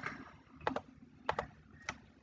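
Faint clicks of a computer mouse: three clicks about half a second apart, the first two each a quick pair.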